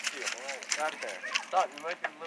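Hunting hounds whining in a string of short yips that rise and fall in pitch, several a second, with light clicks and clinks from around the dog box.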